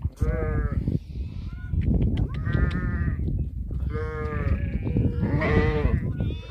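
Sheep bleating: four long bleats, each close to a second, following one another with short gaps.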